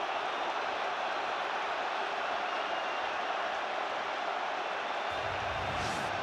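Large football stadium crowd cheering, a steady wall of noise with no single voice standing out. A low rumble joins about five seconds in.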